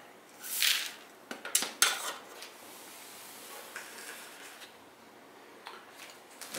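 Rolled oats poured into a plastic mixing bowl: a brief pouring hiss, then a few sharp clicks and knocks of kitchenware against the bowl.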